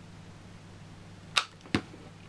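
Two sharp knocks about half a second apart, a little over a second in: a hot glue gun being put down on a cutting mat. A low steady hum runs underneath.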